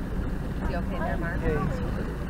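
Motorboat running under way with a steady low rumble, towing an inflatable tube; voices talk faintly over it in the middle.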